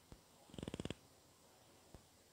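Marker drawing on a whiteboard: a brief, faint rattling squeak of rapid pulses about half a second in, with a faint tap just before and another near the end.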